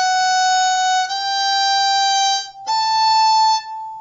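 Violin playing three sustained notes upward on the E string: first finger F sharp, low second finger G right beside it, and third finger A. Each note lasts about a second, with a short break before the last one, which fades near the end.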